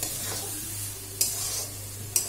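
Metal spatula stirring a potato and white-pea samosa filling in a metal kadai, with a light sizzle of frying, and one sharper scrape of the spatula against the pan a little past a second in. The filling is cooked and done.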